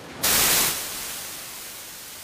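Static-like hiss on the courtroom audio feed: it cuts in sharply about a quarter second in, is loudest for about half a second, then settles to a steady hiss.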